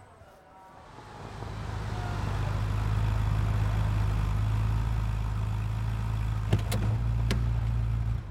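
A convertible sports car's engine grows louder as the car pulls in, then runs steadily with a low hum. A few sharp clicks come near the end, and the sound cuts off suddenly.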